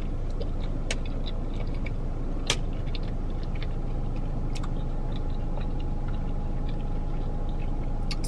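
A person chewing a mouthful of burrito, small soft clicks from the mouth, with a couple of sharper clicks about one and two and a half seconds in. A steady low hum runs underneath.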